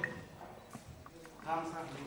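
A loud run of Assamese dhol drumming stops right at the start, leaving a short quiet pause with a few faint knocks and a brief voice about one and a half seconds in.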